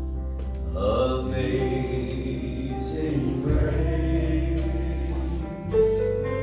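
Gospel music from the church band: an electric keyboard holding sustained bass notes and chords, with singing voices joining about a second in.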